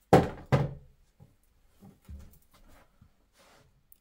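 Two sharp knocks about half a second apart as a roll of sticky tape is set down on a wooden table, followed by a few faint light handling sounds.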